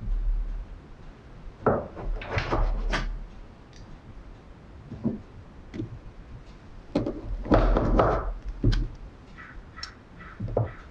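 Chef's knife slicing through a rolled log of puff pastry dough and knocking on a wooden cutting board. There are two bursts of cutting, about two seconds in and again from about seven to nine seconds, with single knocks between them.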